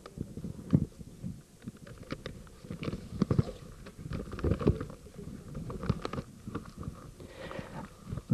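Irregular light knocks and low thumps at an uneven pace, with some low rumbling between them.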